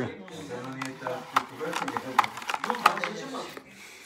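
Several sharp plastic clicks and taps, about seven between one and three seconds in, from handling a toy magnetic drawing pad, with a low mumbling voice underneath.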